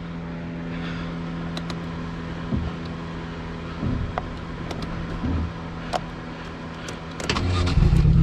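Small car engine of an open-cage Ford Ka buggy running steadily at low revs, with a few short knocks and rattles from the body on a rough dirt track. Near the end the engine revs up sharply and gets much louder.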